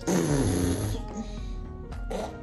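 A woman's low, throaty vocal noise made at a baby, falling in pitch over about half a second, followed by background music with steady held tones.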